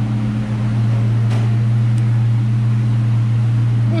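1999 Ford Mustang GT's 4.6-litre V8 idling with a steady low hum, running smoothly on fresh spark plugs and wires after coming in running rough.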